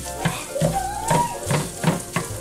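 Ground sausage frying in a skillet while a plastic meat chopper breaks it up: a sizzle with scraping, clicking strokes against the pan about three times a second. A brief rising pitched sound comes in around the middle.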